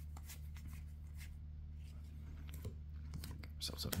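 Trading cards being handled and flipped from one hand's stack to the other: faint, scattered clicks and slides of card stock, over a steady low hum.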